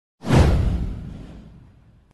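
A whoosh sound effect with a deep boom beneath it. It comes in suddenly about a quarter of a second in and fades away over about a second and a half.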